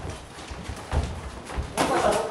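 Irregular low thuds from two boxers sparring: footwork on the ring floor and gloved punches, with a louder burst near the end.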